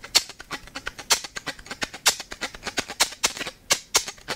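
Muted chop strokes of the bow on a 3Dvarius Line five-string electric violin, heard straight from its pickup: a rhythmic run of scratchy, unpitched strokes with heavier accents about once a second. With the strings muted and foam woven in behind the bridge, no sympathetic ringing comes through, just the chop sound.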